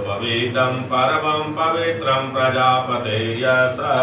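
Men chanting Sanskrit mantras of a Hindu puja, a steady recitation without pause.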